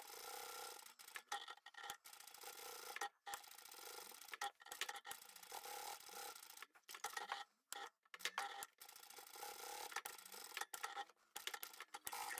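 Faint sewing machine running steadily as it stitches along the edge of a layered fabric piece, with several brief breaks.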